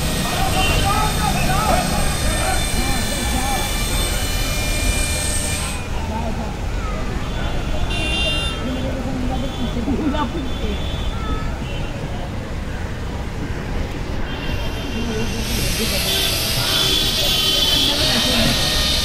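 Busy street noise: traffic running, with many people's voices in the crowd below.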